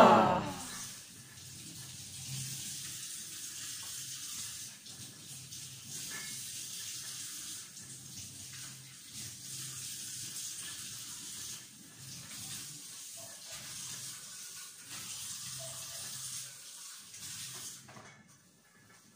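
Kitchen tap running into a sink while dishes are washed by hand, a steady hiss of water with a few faint knocks. It opens with a brief loud falling sound that dies away within the first second.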